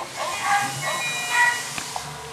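Musical greeting card's sound chip playing a short electronic melody as the card is opened, a run of thin steady notes at changing pitches.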